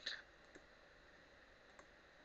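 A single computer mouse click right at the start, followed by two much fainter ticks; otherwise near silence.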